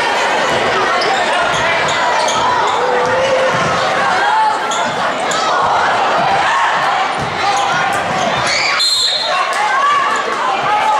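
Live basketball game in a gym: the ball dribbling on a hardwood floor, sneakers squeaking and spectators' voices throughout. A short, shrill referee's whistle about nine seconds in stops play.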